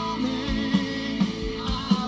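Live rock band playing a song: electric guitars and bass over a drum kit with a regular kick-drum beat.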